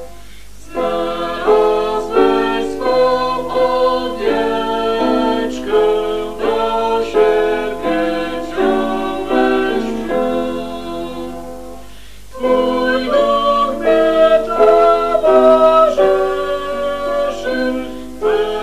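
A hymn being sung, phrase by phrase, with brief pauses between phrases about half a second in and again around twelve seconds in.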